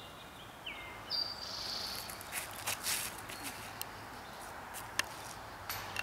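Woodland ambience with birds calling: a short whistled note about a second in, then a higher held note, over a steady background hum of insects. A few faint knocks and clicks come around the middle and near the end.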